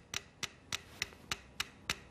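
Two mechanical pendulum metronomes ticking, sharp clicks about three a second. They stand on a thin board resting on two drink cans, which couples their swings so that they gradually fall into step.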